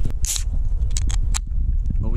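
An aluminium beer can pulled open: a short hiss and a few sharp clicks from the pull tab, over steady wind rumble on the microphone.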